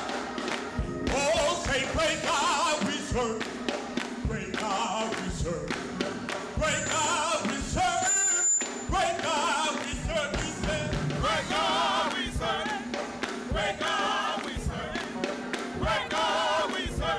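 Live gospel singing with keyboard accompaniment, the voices held in long notes with wide vibrato, over short low thuds.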